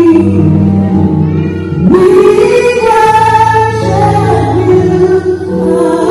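Gospel song performed live by a band: a woman singing lead over keyboard, bass and drums, holding long notes and sliding up into a high note about two seconds in.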